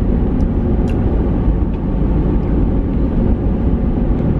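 Steady low rumble of a car driving, heard from inside the cabin: road and engine noise.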